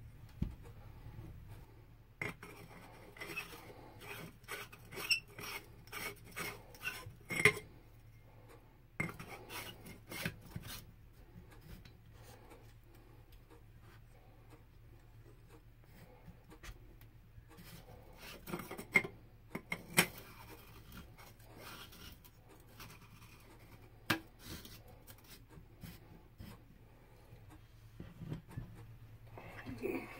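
A1 buffer tube being screwed by hand onto the greased threads of an AR lower receiver: quiet metal scraping and clicking as it turns, in quick short strokes through the first ten seconds, then sparser, with a few sharper knocks later on.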